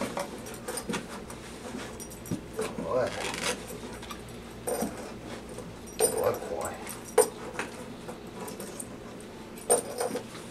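A dog nosing into a cardboard box on a carpeted floor: scattered short scuffs, knocks and rustles of cardboard, a few of them sharp clicks.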